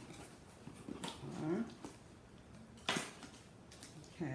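Cardboard shipping box being slit and opened by hand: scraping and rustling, with a short sharp tearing sound about three seconds in. A brief whining vocal sound about a second and a half in.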